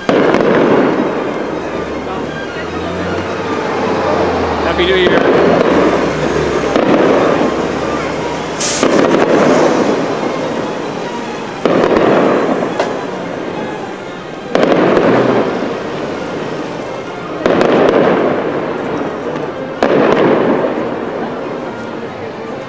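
Aerial fireworks shells bursting overhead: a string of about eight booms a few seconds apart, each dying away slowly in a long echo.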